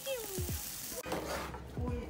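Chicken sizzling on a barbecue grill, a steady hiss that cuts off abruptly about a second in. A low steady hum follows, and voices start near the end.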